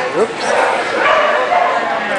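A dog gives a short rising yip near the start, over the chatter of voices in the hall.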